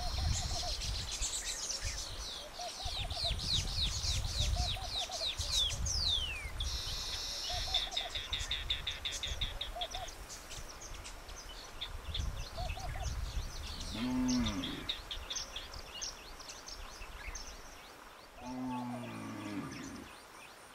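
Wild birds singing and calling in open country: many quick, high downward-sweeping chirps in the first several seconds, then a fast, even trill, with a shorter mid-pitched call repeating every couple of seconds. A low rumble runs under the first two-thirds, and two lower, drawn-out calls come in the second half.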